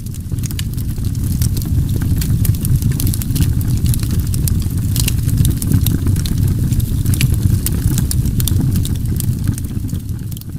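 Wood campfire crackling, with many sharp irregular pops over a steady low rumble.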